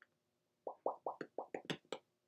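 Wet lip smacks from someone eating meat: a quick run of about eight, starting a little over half a second in.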